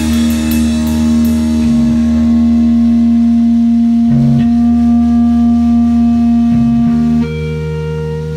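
Rock song's guitar chord held and ringing out at the end of the song, with a cymbal decaying after the last drum hits; the low notes shift a few times and a new, slightly quieter chord comes in near the end.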